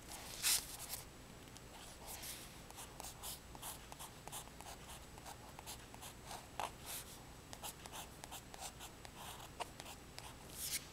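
Fountain pen nib scratching across card as Chinese characters are written: a run of short strokes and taps with brief pauses between them, and one louder stroke about half a second in.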